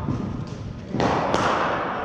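A cricket ball strikes with a loud thud about a second in, with a sharp crack just after it, and the sound rings on for most of a second in the large indoor hall.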